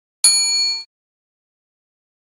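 Notification-bell sound effect: a single bright ding with several high ringing tones, starting about a quarter second in and cut off after about half a second, marking the bell icon being clicked on.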